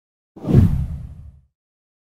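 A deep whoosh sound effect for an on-screen transition: it sweeps in about a third of a second in and fades away over about a second.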